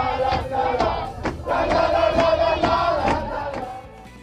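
A crowd of athletes singing and shouting together at full voice in a bus, over a regular beat; the sound falls away near the end.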